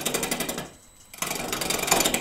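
Roughing gouge cutting into a spinning paper birch log on a wood lathe, a rapid clatter of the tool striking the not-yet-round log. Two passes, with a short break just under a second in.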